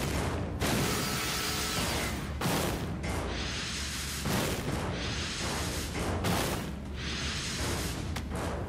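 Cartoon transformation-sequence sound effects over music: repeated whooshing and crashing, rock-shattering hits that swell about every two seconds.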